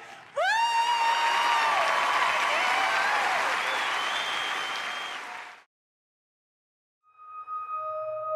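A woman's rising shout of "woo!", then an audience cheering and applauding, with high cheers over the clapping, cut off suddenly about five and a half seconds in. After a second of silence, soft held tones of ambient music fade in near the end.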